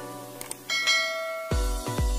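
Notification-bell chime sound effect: one bright ring a little under a second in, fading within about a second, over electronic background music. A heavy bass beat comes in about one and a half seconds in.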